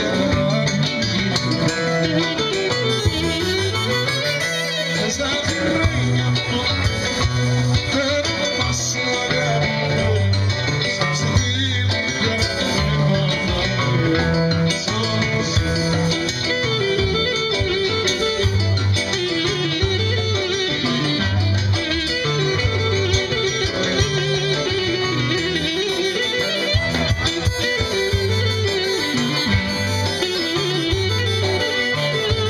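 Live folk dance band playing, a clarinet carrying a winding melody over drums and a steady, repeating bass line.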